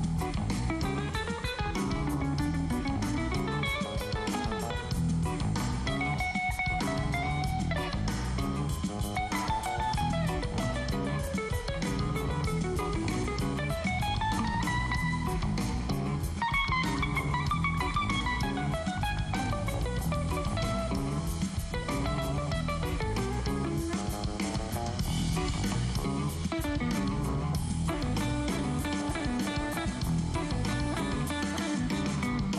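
Band playing a maracatu groove, with a hollow-body electric guitar soloing over bass and drum kit. The lead line bends its notes up and down.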